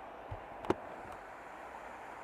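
Small stream rushing steadily as it pours over a low drop into a rocky channel. One sharp click comes just under a second in.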